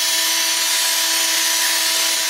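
Cordless drill spinning a toilet brush to stir a thick caustic-soda stripping gel in a plastic bucket. It makes a steady motor whine over a hiss, at constant speed.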